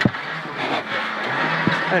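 Renault Clio R3 rally car's naturally aspirated four-cylinder engine and road noise heard inside the cabin as the car slows for a tight left corner. There is a sharp knock just after the start and another near the end.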